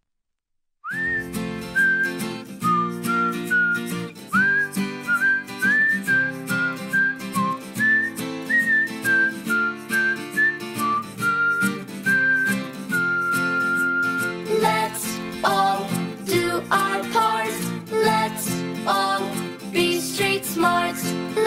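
Upbeat children's road safety song starting after a brief silence: a whistled melody over guitar and a steady beat. Voices come in singing about fifteen seconds in.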